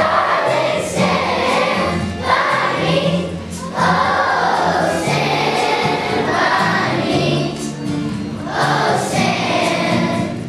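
A children's choir of fourth graders singing together in unison phrases over held low notes of an instrumental accompaniment.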